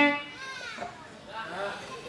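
A live band's final held note cuts off right at the start, followed by quieter, scattered voices calling and chattering.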